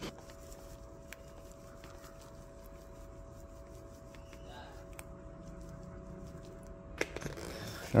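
Oxalic-acid rust-cleaner powder poured from a plastic jar into a plastic tub: faint rustling with a few light clicks, and a pair of louder knocks about seven seconds in. A faint steady hum runs underneath.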